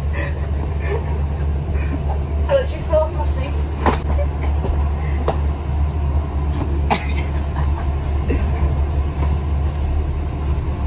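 Steady low rumble of a bus heard from inside the passenger cabin, with a few sharp clicks or rattles, about four and seven seconds in.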